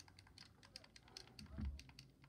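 Faint, quick, irregular clicking, several clicks a second, with a soft low thump near the end.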